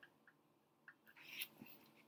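Near silence: room tone with a few faint mouth clicks and a soft breath through the nose about halfway through.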